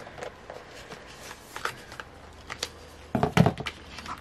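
Hands rummaging in a bag to take out a small card reader: scattered light clicks and rustles, with a louder burst of handling noise about three seconds in.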